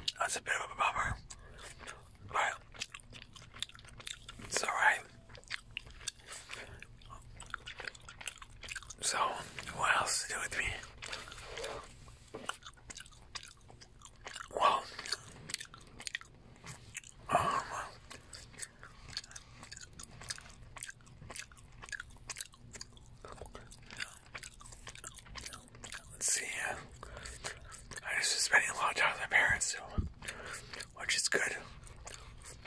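Gum being chewed close to a microphone: a run of wet smacking and clicking mouth sounds, with a few louder smacks spread through.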